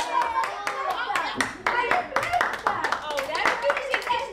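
Children clapping their hands in scattered, irregular claps, with children's voices calling and chattering over them.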